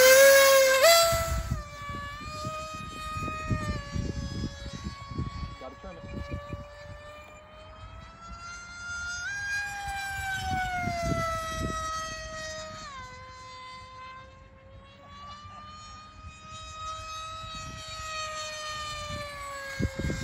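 Brushless electric motor and pusher propeller of an FMS Flash 850mm RC jet on a 4-cell 2200 mAh battery, winding up with a rising whine to full throttle for the hand launch, then a steady buzzing whine as it flies, its pitch stepping up and later down with throttle changes. Gusts of wind rumble on the microphone.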